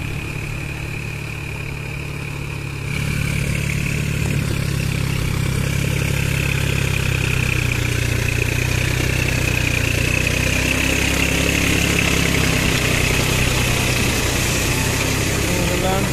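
New Holland 4710 Excel tractor's three-cylinder diesel engine running steadily as the 4WD tractor works through paddy mud, with a high whine over it. It gets louder about three seconds in.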